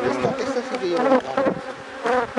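Honeybees from an opened hive buzzing loudly around the frames, many wavering buzzes overlapping.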